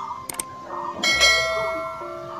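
Subscribe-button overlay sound effect: a couple of quick mouse clicks, then a notification bell rings once about a second in and fades away.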